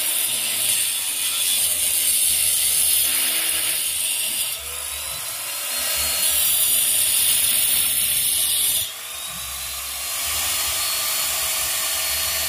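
Handheld angle grinder with a cutting disc running and grinding a wiring groove into brick. The cut eases off twice, about four and a half and nine seconds in, and the motor note rises after the second dip as the load comes off.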